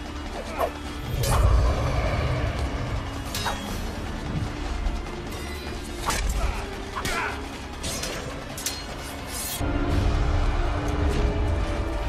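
Film fight soundtrack: dramatic music with a deep rumble, under a string of sharp hits and clashes about a second or two apart, and a man's pained shout near the start. Held musical tones come in near the end.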